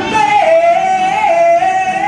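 A man singing high, long-held notes into a handheld microphone, the pitch wavering and stepping down a little as he holds the line.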